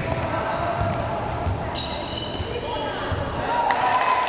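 A basketball bouncing on a gym floor during a game, with repeated dull thuds and short high squeaks of sneakers on the court.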